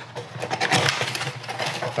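Cardboard filament box being torn open by hand: its sealed flap ripping and scraping, a rough, scratchy tearing in quick spurts.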